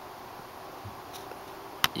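Faint steady hiss of background noise, with one sharp click shortly before the end.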